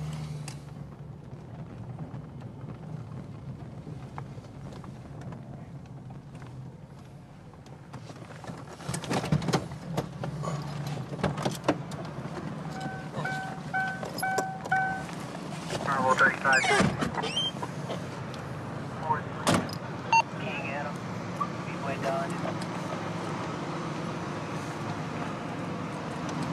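Police patrol car idling with a low steady hum, then car doors clunking open and shut with several sharp clicks, and a door chime beeping five times in quick succession.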